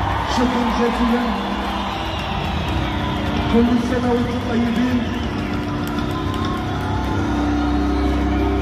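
A man's voice over a concert sound system, in held, bending phrases, with music and crowd noise beneath, picked up by a phone in the audience.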